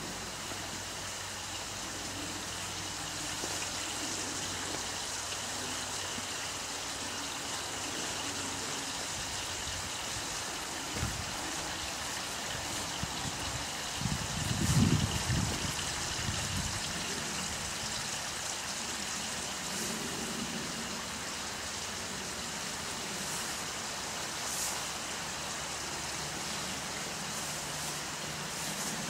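A steady rushing noise, with a brief low rumble about fifteen seconds in.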